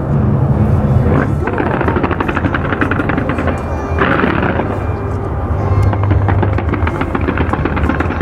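Fireworks going off, with loud, rapid crackling and popping, over music.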